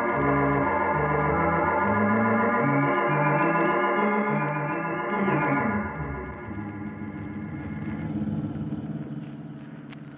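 Organ music bridge: a dramatic organ passage with shifting bass notes, loud for about five seconds, then dropping to a softer held chord that fades away.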